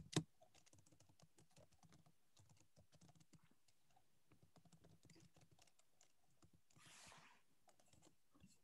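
Faint typing on a computer keyboard, many light irregular key clicks, with a short soft hiss about seven seconds in.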